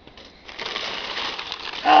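Crumpled brown kraft packing paper rustling and crinkling as it is pulled out of a cardboard box, starting about half a second in and running on steadily. A voice says "oh" at the very end.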